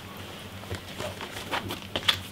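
Cardboard LP gatefold sleeve being handled and opened out: a few soft taps and rustles, bunched in the second half, over a low room hum.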